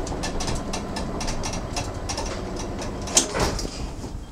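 A 1907 Otis winding-drum birdcage elevator car travelling, with a steady mechanical rumble and rapid regular clicking of about five or six clicks a second. A louder clunk comes about three seconds in.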